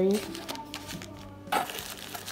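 Crinkle-cut paper shred filler and plastic snack-bar wrappers rustling and crinkling as a hand rummages in a cardboard snack box, with a louder burst of rustling about one and a half seconds in.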